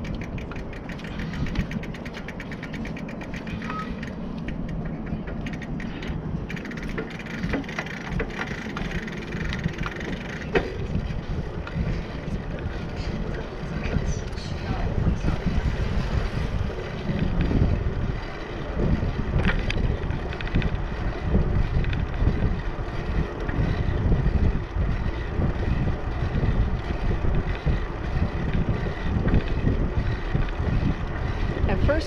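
Bicycle rolling along a concrete bridge deck, with wind buffeting the microphone as a fluttering low rumble. The rumble grows louder from about halfway through.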